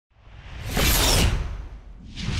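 Whoosh sound effect from an animated logo intro, swelling up to a peak about a second in and then fading away, with a deep rumble underneath.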